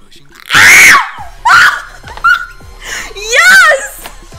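Excited high-pitched screaming from two women: four loud shrieks with wavering, gliding pitch, the longest near the end, mixed with some laughter.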